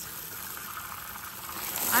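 Water running from a hose into a water trough, a soft even hiss that grows louder near the end.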